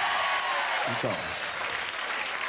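Studio audience applauding and cheering, with one long drawn-out call rising and then falling over the clapping in the first second.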